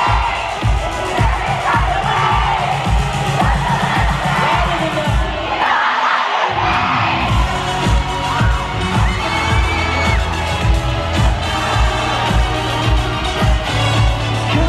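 Live pop band playing an instrumental stretch with a steady kick-drum beat over a cheering arena crowd. The bass and drums cut out for about a second midway, then come back.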